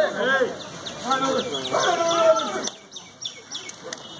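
Men's voices shouting loudly in long, drawn-out calls during a kabaddi raid, dying down after about three seconds.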